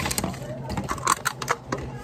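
Handling noise from a phone being grabbed and moved by hand: a quick irregular string of sharp clicks and knocks as fingers rub and tap against the phone near its microphone.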